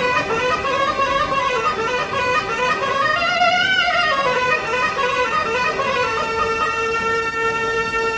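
Yemeni mizmar, a reed pipe, playing a wavering melody, then holding one steady note from about six seconds in.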